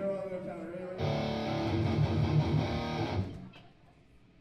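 A brief burst of amplified electric guitar and bass played on stage between songs. It starts about a second in and stops after about two seconds, fading out near the end.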